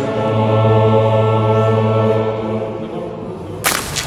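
Choir singing long held chords with instrumental accompaniment in a reverberant church, fading out after about two and a half seconds. About three and a half seconds in it breaks off into a sudden loud burst of outdoor noise.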